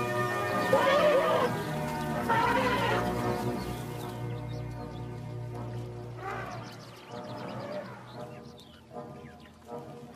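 Elephants trumpeting over background music: loud calls about a second in and again around three seconds, a weaker one near six seconds, then quieter toward the end.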